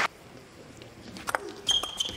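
A hushed table tennis hall between points: a few sharp taps of a celluloid table tennis ball, mostly in the second half, and a short high squeak near the end.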